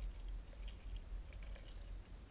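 Faint underwater sound: a low rumble of moving water with scattered small clicks and ticks.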